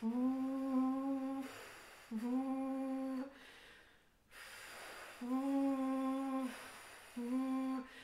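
A woman blowing a fast stream of air through her lips and switching her voice on and off over it: four held sung notes on the same steady pitch, each about a second long, with breathy air noise between them. It is the breath-and-voice warm-up for the klezmer technique of singing while playing the clarinet, keeping the air flowing fast while the voice sounds.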